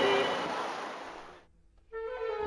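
An operatic sung note fades away over about a second and a half to near silence, and just before the end an orchestra comes in with held notes over low strings.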